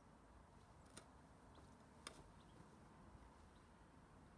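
Near silence: faint outdoor ambience, broken by two brief faint clicks about a second apart.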